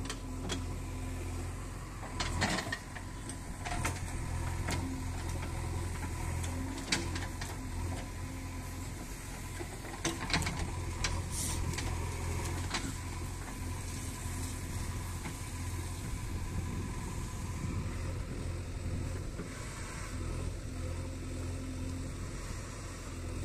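JCB 3DX backhoe loader's diesel engine running steadily under working load, with scattered knocks and clanks as the backhoe bucket works the soil.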